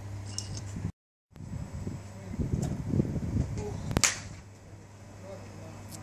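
A golf iron striking a ball once on a driving-range mat: a single sharp crack about four seconds in. Faint low murmuring runs around it, and the sound drops out completely for a moment about a second in.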